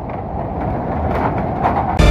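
Steady rushing rumble of flash-flood water, with a few faint knocks.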